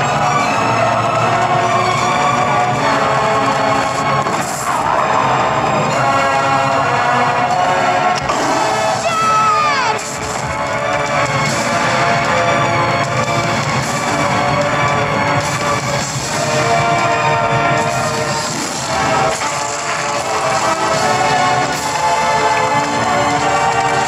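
Loud orchestral film score, with the noise of a stampeding wildebeest herd running beneath it.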